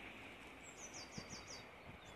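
Steady outdoor hiss with a small bird singing a short run of about five high, falling notes in the middle. A few soft, low knocks are heard around the same time.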